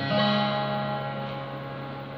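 Taylor steel-string acoustic guitar: one final chord strummed just after the start and left to ring, fading slowly with the low strings sustaining longest, ending the piece.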